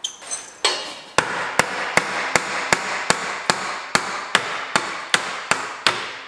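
Hammer blows knocking the old rear air spring of a Mercedes W211 Airmatic suspension out of its seat. A steady series of about fourteen sharp strikes, a little over two a second.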